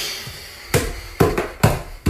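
A short laugh, then heavy footsteps thudding evenly about twice a second, as of someone stomping up stairs.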